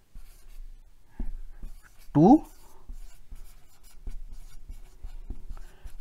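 Felt-tip marker writing words on a white board, in short irregular strokes.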